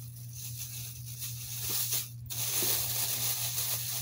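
Plastic shopping bag rustling and crinkling as items are handled inside it, louder from about halfway through, over a steady low hum.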